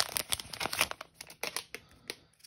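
Plastic trading-card pack wrapper crinkling as it is pulled open and the cards are drawn out. The crinkling is dense at first, then thins to scattered crackles after about a second.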